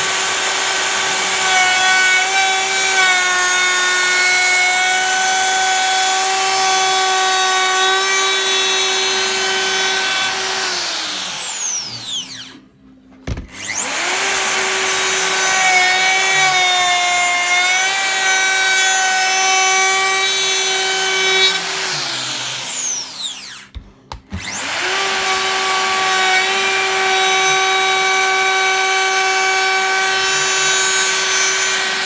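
DeWalt router fitted with a round-over bit, started three times: each time it spins up quickly to a steady high whine, runs for about eight to ten seconds, then winds down with a falling pitch when switched off. Its pitch sags slightly now and then as the bit cuts into the board's edge.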